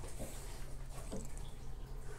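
A faint sip of hot coffee from a ceramic mug, over a low steady hum in the room.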